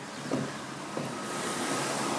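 A road vehicle passing on the street, its tyre and engine noise swelling from about halfway through.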